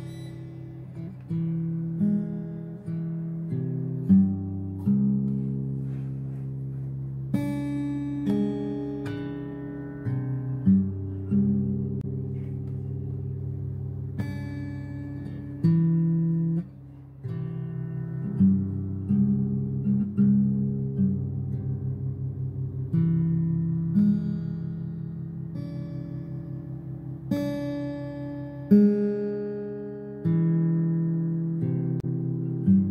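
Background music: acoustic guitar playing plucked and strummed chords, with note attacks every second or two.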